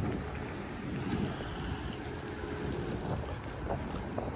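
Wind blowing across the microphone: a steady low rumble with no distinct events.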